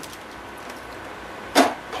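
A plastic basket of brass hardware being lowered into an ultrasonic cleaner's tank of water, with one short splash near the end over a steady background hiss.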